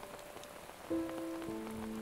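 Steady rain falling, with background music of long held notes coming in about a second in.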